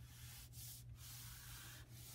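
Near silence: faint room hiss with a steady low hum.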